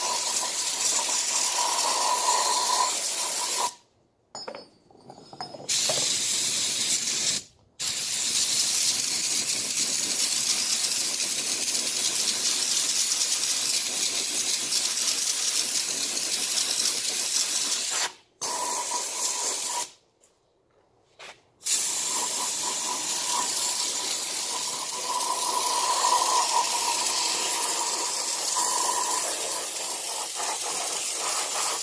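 Aerosol spray paint can spraying flanged steel hose fittings, a steady hiss in long bursts broken by a few short pauses.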